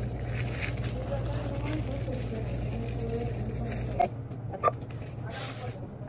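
Store checkout-counter sounds: a steady low hum with faint voices in the background, the hum cutting off about four seconds in. After that come two sharp clicks and a brief rustle near the end.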